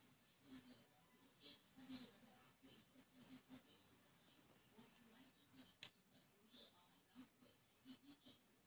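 Near silence: faint room tone with a few faint, indistinct short sounds and clicks in the background.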